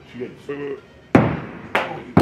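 A thrown axe hits the wooden plank target with one sharp, loud whack about a second in, followed by a smaller knock as the axe drops to the floor without sticking.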